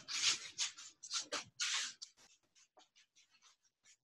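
Faint, irregular brushing swishes of sneakers sweeping and scuffing across artificial turf during foot-sweep movements, lasting about two seconds.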